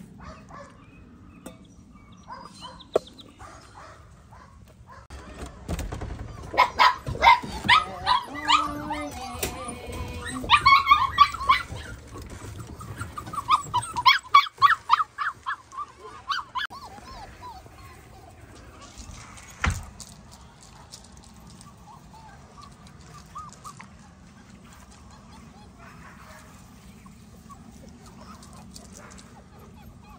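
Malinois puppies barking and yipping in quick strings of short, high calls, loudest from about six to sixteen seconds in, then fading to a quieter stretch. It is anticipatory barking for feeding time, set off by hearing people at the door.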